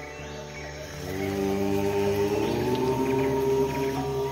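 A long-held 'Om' chant sung over soft background music. It swells about a second in, and its pitch rises slightly near the middle.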